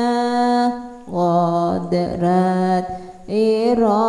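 A voice chanting a pujian, an Islamic devotional hymn reciting the attributes of God, in long held notes with ornamented turns of pitch and two short pauses.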